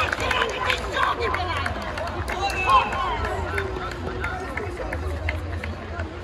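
Futsal players calling and shouting to one another during play, with running footsteps and sharp knocks of the ball, over a steady low rumble.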